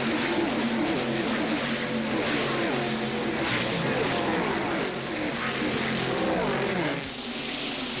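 Several ARCA stock cars' V8 engines racing past at full speed one after another, each engine note falling in pitch as the car goes by.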